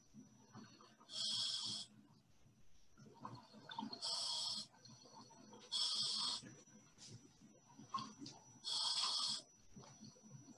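Scuba diver breathing through a regulator on an underwater video: four hissing breaths a few seconds apart, with faint crackling of bubbles between them.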